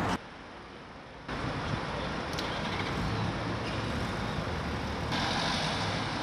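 Street ambience: a steady hum of road traffic, which steps up in level about a second in.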